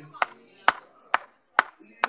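Four sharp percussive hits, evenly spaced at about two a second.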